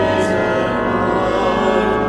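Small church choir singing a hymn verse with pipe organ accompaniment, on long sustained chords.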